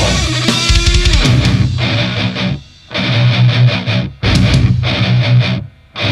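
Deathcore song played on heavily distorted electric guitars and drums, a stop-start riff that cuts out suddenly three times for short gaps before crashing back in.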